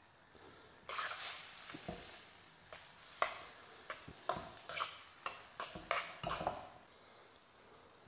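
Metal utensil stirring and tossing noodles and prawns in a steel wok, scraping and clinking against the pan in short irregular strokes that start about a second in and stop about a second before the end.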